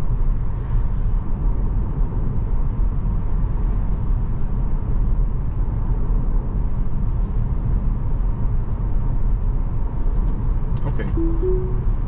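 Steady tyre and road noise inside the cabin of a Tesla Model 3 Performance driving along. Near the end a short rising two-note chime sounds as Autopilot is engaged.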